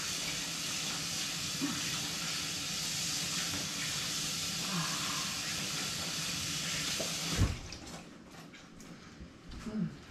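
Kitchen faucet running steadily as hands are washed under it, rinsing off raw chicken. The water is shut off abruptly about seven seconds in with a brief thump, followed by faint clicks and footsteps.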